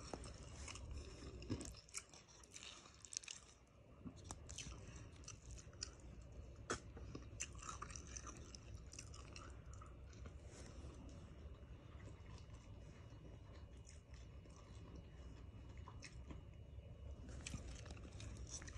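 Faint, close-up chewing of fried fish, with scattered sharp little clicks and crunches from the mouth.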